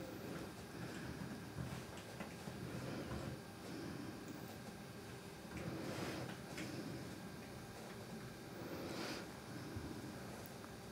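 Faint scratching and dabbing of a synthetic paintbrush on a linen canvas board, with a few soft short scrapes scattered through, over quiet room tone.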